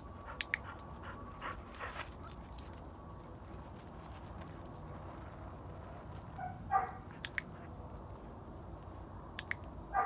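Dog-training clicker clicking in quick double snaps as the dog runs in to the handler's call, marking the recall, then clicking again later while he sits. A short whimper from the dog about seven seconds in.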